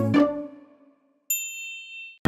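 The last notes of a children's song die away. About a second later a single bright chime-like ding sounds suddenly, rings for nearly a second on a few high clear tones, and stops.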